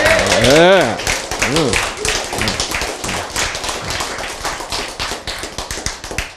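A small audience laughing and clapping. The quick, dense hand claps are strongest in the first seconds and slowly thin out and fade.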